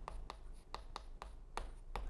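Chalk writing on a blackboard: a string of short taps and scratches as Korean characters are written out.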